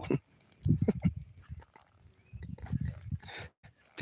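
A man laughing in short pulsed bursts, first about a second in and again about two and a half seconds in.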